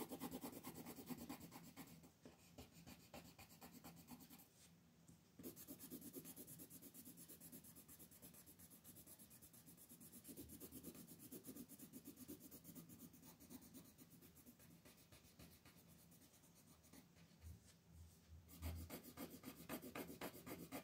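Coloured pencil shading on paper in rapid back-and-forth strokes, a faint steady scratching. It pauses briefly about five seconds in and again shortly before the end.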